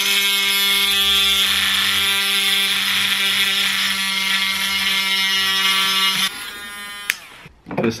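Small mini rotary tool (Dremel-style) running at a steady pitch as its grinding bit sands down the edge of a boost gauge part a little at a time. The motor cuts off about six seconds in.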